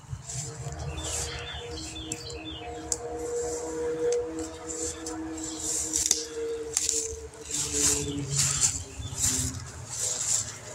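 Outdoor ambience: birds chirping and footsteps through weedy grass over a steady hum that stops about eight and a half seconds in.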